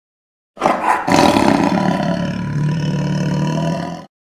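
A loud, low roar that starts suddenly about half a second in, swells at about a second, then settles into a low drone and fades out near the end.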